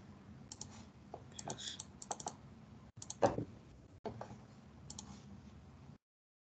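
Faint runs of sharp clicks from computer keys, several in quick succession each time, with one louder thump a little past halfway, heard through a video-call microphone with brief dropouts.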